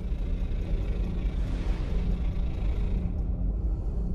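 Sound-design rumble: a deep, steady low drone with a hissing whoosh that swells in the middle and fades out about three seconds in.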